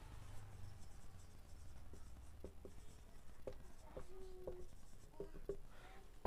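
Felt-tip marker writing on a whiteboard: faint short strokes and scrapes of the tip as a word is written, with a brief squeak about two-thirds of the way in.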